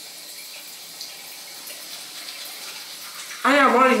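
Water running steadily from a bathroom tap into the sink, a low even hiss. A voice starts speaking near the end.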